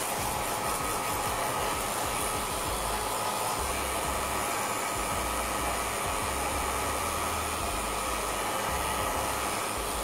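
Handheld electric hair dryer running steadily, blowing over a freshly glued paper napkin to dry it.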